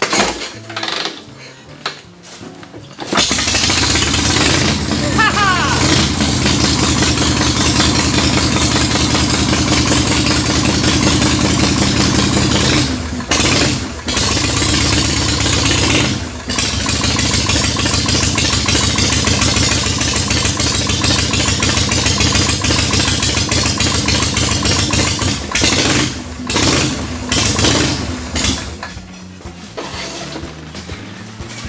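Cold 1979 Harley-Davidson FXS Shovelhead 80 cubic inch V-twin kickstarted with the choke pulled. It catches about three seconds in without kicking back, the sign that its static ignition timing is now set right. It runs steadily with a few brief dips, goes uneven near the end and is shut off.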